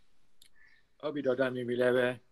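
A man's voice holding one drawn-out syllable on a steady pitch, starting about a second in, after a faint click.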